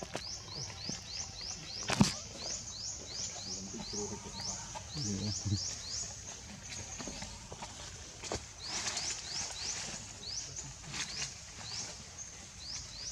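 Runs of short, high chirps, each rising in pitch, repeated about three times a second with a few pauses, over outdoor background. A sharp click about two seconds in is the loudest event.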